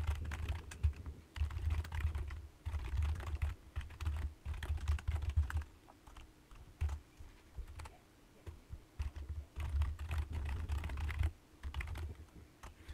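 Typing on a computer keyboard in quick bursts of keystrokes, with a lull of a few seconds just after the middle.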